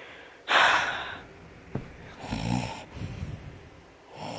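A person making fake snoring noises with the mouth: a loud, noisy breath about half a second in, a small click, then a lower, voiced snore-like breath out about two and a half seconds in.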